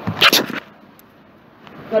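A short, sharp double burst of noise near the start, then about a second of quiet room tone.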